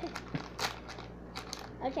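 A foil blind-bag packet crinkling and tearing open at its tear strip, a few short crackles, the loudest about two-thirds of a second in. A girl laughs at the end.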